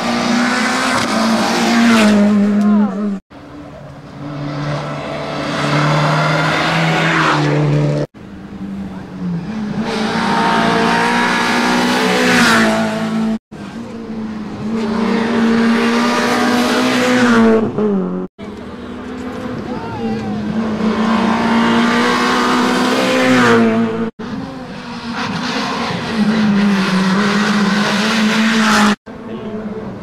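A succession of rally cars taking a tight hairpin, each engine revving hard and rising and falling in pitch through the gear changes as the car accelerates out of the corner. Sharp cuts every four to six seconds jump from one car to the next.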